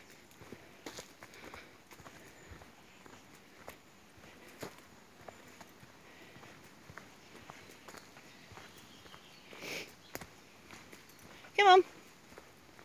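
Footsteps walking along a dirt woodland path, a scatter of soft, irregular crunches and ticks, with a louder rustle about ten seconds in.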